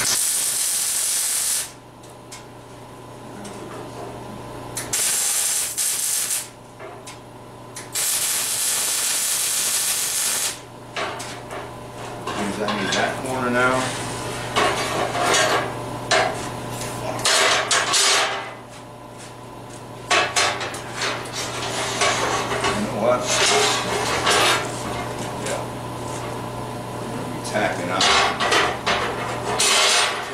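Electric arc welding on steel in three short bursts of a second or two each in the first ten seconds. After that, steel rod clatters and knocks against the steel welding table as it is handled. A steady low hum runs underneath.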